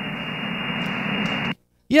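Steady hiss and static of a CB channel around 27.345 MHz coming through the receiver with no station talking. It cuts off suddenly about one and a half seconds in, as the local transmitter keys up. A man says "yeah" at the very end.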